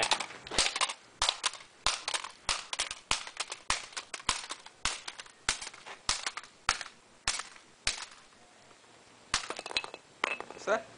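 Claw hammer repeatedly smashing the sheet-metal chassis of a car stereo head unit on concrete paving. Sharp metallic strikes come about two to three a second, stop for over a second near the end, then two quick blows follow.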